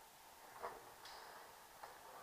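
Near quiet, broken by a few faint, short clicks and taps: the clearest a little over half a second in, a sharper one about a second in, and a small one near the end.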